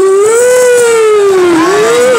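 One loud sliding tone from the PA, gliding slowly up and down like a siren and rising again near the end, in the middle of dance music.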